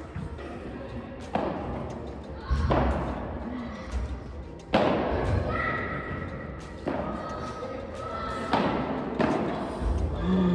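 Padel rally: the ball struck by solid paddles and rebounding off the court and glass walls, about six sharp hits one to two seconds apart, each ringing on in a large indoor hall.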